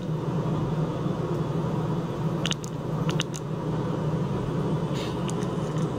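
A steady low hum, with a few brief light clicks in pairs about two and a half and three seconds in, and fainter ones near the end.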